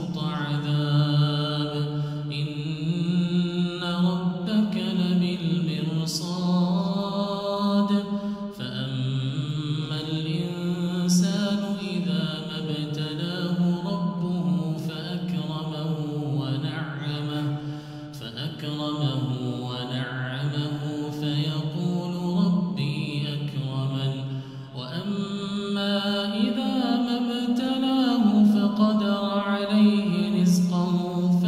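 A man reciting the Quran in Arabic in a slow, melodic chant, drawing out long notes that glide up and down, with short breath pauses between verses.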